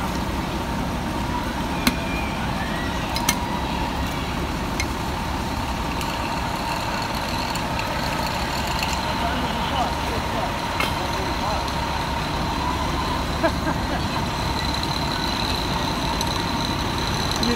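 Parked fire engine's diesel engine running steadily, a constant low rumble with a thin high whine over it. A few sharp clicks, the first about two seconds in.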